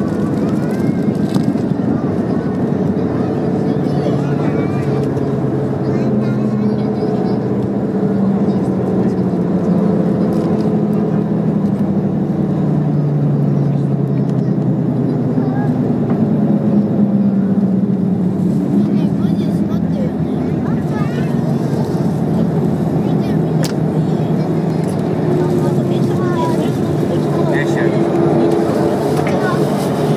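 Airliner cabin noise during the landing rollout: steady engine and airflow noise with several drifting engine tones as the aircraft slows on the runway.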